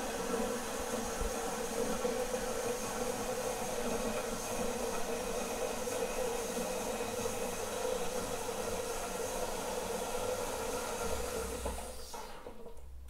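Toilet tank refilling after a flush: a steady rushing hiss of water with a steady hum underneath, which dies away at the very end as the fill valve shuts off.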